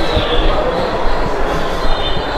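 Pedal-driven flywheel machine running, a large flywheel and belt-and-pulley drive turned by a person pedaling instead of an electric motor. It makes a steady mechanical clatter and rattle with low knocks.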